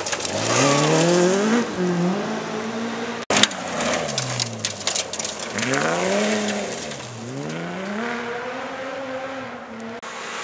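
Rally car engines driven hard on a loose gravel stage, revs climbing and dropping through gear changes, with gravel spraying from the tyres. The sound cuts off abruptly about a third of the way in, then a second car comes off the throttle, accelerates out of the corner and holds high revs.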